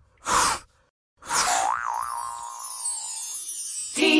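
Cartoon logo sound effects: a short whoosh about a quarter of a second in, then, from just past one second, a wobbling boing-like tone under a high, falling sparkly shimmer that slowly fades.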